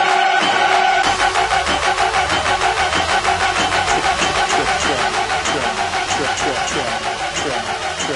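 Electronic trap music: a held synth tone over fast, repeating downward-sliding low notes, with hi-hat-like ticks coming in about halfway through.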